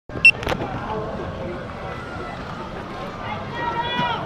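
A camera's start-up beep, one short high tone about a quarter second in, followed by a handling knock. Indistinct voices talk in the background, and one voice comes through more clearly near the end.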